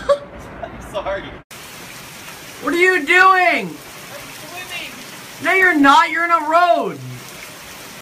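Steady heavy rain falling on a street, with a person's voice calling out twice in long, pitch-bending cries over it. The rain starts suddenly about a second and a half in.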